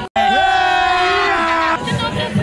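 Several young women's voices shouting one long, held cheer together, cutting in abruptly just after the start and breaking off shortly before the end, when music and chatter return.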